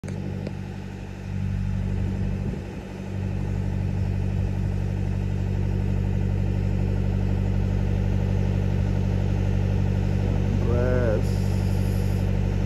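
Tugboat's diesel engine running steadily, a low even drone heard from the deck.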